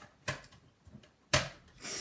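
Tool and hand handling noises on a laptop's plastic bottom cover while its screws are driven back in with a precision screwdriver: a faint scrape about a quarter second in, then a sudden, louder scrape or rub about a second and a half in that quickly fades.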